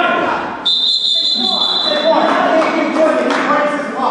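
A referee's whistle blown in one steady, high, shrill note for about a second and a half, starting just under a second in, over voices of coaches and spectators echoing in a gym.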